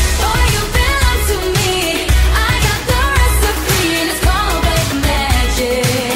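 Pop song playing: a solo singing voice carrying the melody over a steady beat and bass.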